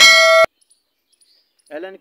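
A bell-like ding sound effect from an animated subscribe button's notification bell. It rings loud and steady for about half a second, then cuts off suddenly.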